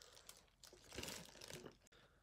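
Faint crinkling of plastic wrap handled around a metal Pokémon card tin, with a few small clicks.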